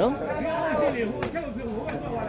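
A sepak takraw ball struck by players' feet during a rally: three sharp knocks, about a second in, a little later, and near the end, over men's voices talking and calling.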